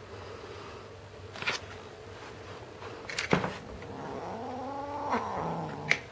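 Red point Siamese kitten giving one long, drawn-out meow whose pitch rises and then falls, starting a little past the middle. A couple of sharp knocks come before it, the louder one about three seconds in.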